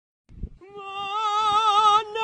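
A person singing one long operatic note with a wide, even vibrato, starting about half a second in and swelling louder.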